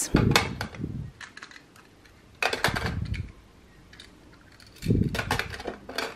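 Small plastic cutters being handled and set down into a clear plastic drawer organizer: three short bouts of clattering and clicks, at the start, midway and near the end.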